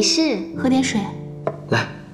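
Dialogue over soft background music with long held notes.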